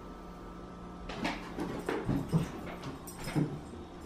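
A dog making a run of short vocal sounds, starting about a second in, over a steady low hum.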